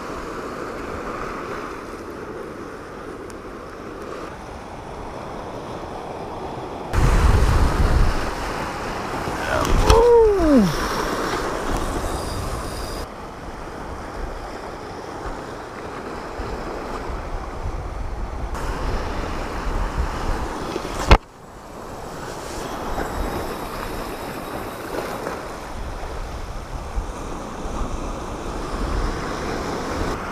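Sea waves washing against a rocky shore, with wind buffeting the microphone. A gust rumbles about seven seconds in, a short falling tone sounds about ten seconds in, and a single sharp click comes about two-thirds of the way through.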